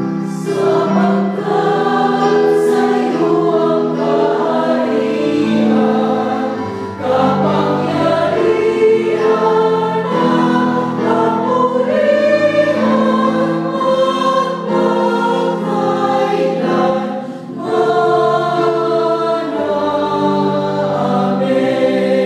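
A small women's choir singing a Tagalog hymn in harmony, in long held chords, with two short breaks between phrases, one about a third of the way in and one about four-fifths in.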